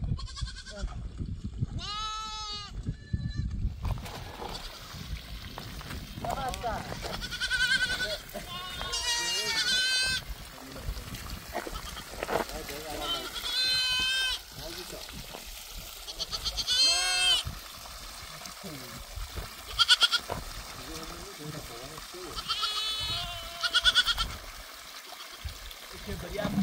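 Goats bleating again and again: about seven high, wavering calls, spaced a few seconds apart.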